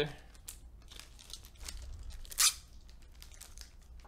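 Packaging handled with faint crinkling, then one short, loud rip about two and a half seconds in.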